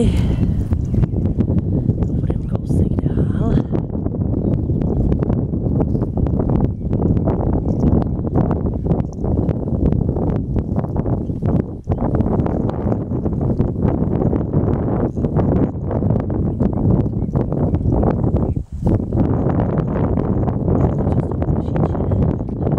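Strong wind buffeting the microphone: a loud, rough rumble that swells and falls with the gusts, dropping away briefly twice.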